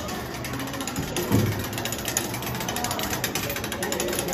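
Hand-cranked gear mechanism of a hands-on exhibit clicking rapidly and steadily, ratchet-like, as its handle is turned.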